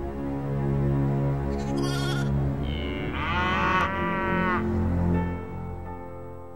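A lamb bleating once, a wavering call lasting over a second about three seconds in, over sustained soundtrack music.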